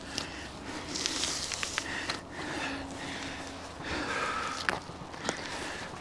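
Quiet rustling and tearing of hide being cut and pulled by hand from a hanging roe deer carcass, with a few light clicks.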